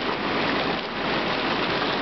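2009 Cal Spa hot tub with its jets running, the water churning and bubbling in a steady rush.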